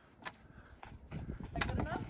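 Snow being swept off a snow-buried car, crunching and scraping that gets busier from about halfway in, after a few sharp clicks.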